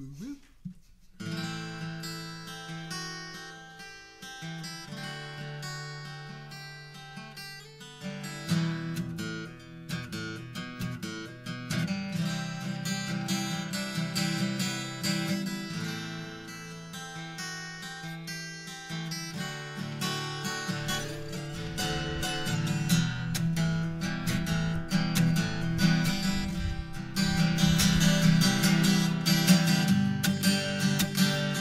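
Acoustic guitar playing a song's instrumental intro. It starts about a second in and grows fuller and louder towards the end.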